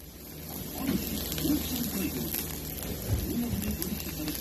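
Food sizzling on a hot cooking surface, a steady hiss that grows louder about a second in, with indistinct voices underneath.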